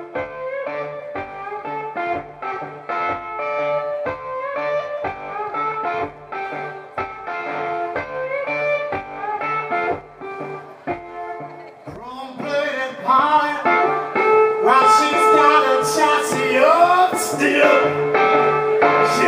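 Live blues band playing a steady groove: drums beating about twice a second, a low pulsing bass line and electric guitar. About two-thirds of the way through, a louder lead line with sliding, bending notes comes in over the band.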